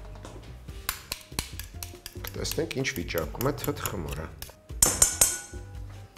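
Metal utensil clinking repeatedly against a glass bowl as a pale mash is worked, with a brighter run of clinks near the end from a spoon in a drinking glass, over background music.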